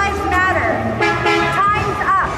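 A woman's voice amplified through a handheld microphone, speaking with drawn-out, held tones over city street noise.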